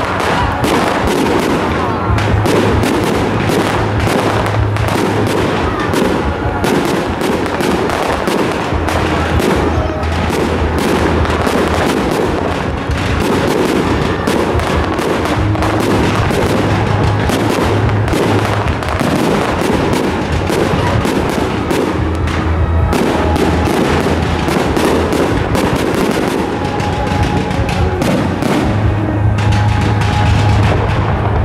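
Fireworks display: a dense, continuous run of bursting shells and crackling stars, with music playing underneath.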